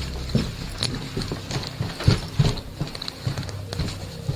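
Hurried footsteps, irregular thuds about two or three a second, as a person moves through a house carrying a camera, over a steady low hum.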